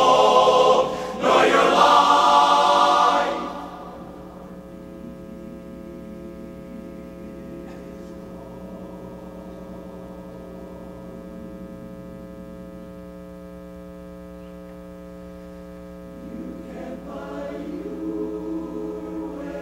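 Men's barbershop chorus singing a cappella, a full chord that ends about three seconds in. A quiet, steady hum then holds for some twelve seconds before the chorus comes back in softly near the end.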